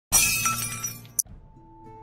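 Intro sound effect: a sudden glassy crash that fades over about a second, a short bright click, then held synthesizer tones of intro music begin.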